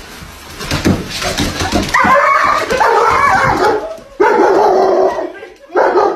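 A dog whining and yipping in two long, wavering stretches, the first starting about two seconds in and the second about four seconds in.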